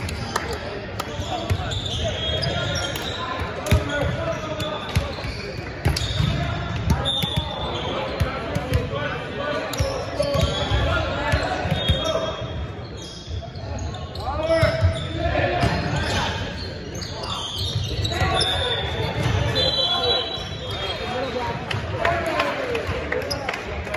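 Busy gymnasium sound during a volleyball match: many overlapping voices of players and spectators calling and chattering, echoing in the large hall, with balls bouncing on the hardwood floor and short squeaks of sneakers on the court.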